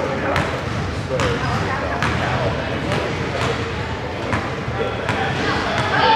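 A basketball bouncing on a hardwood gym floor, about seven bounces spaced a little under a second apart, over background chatter.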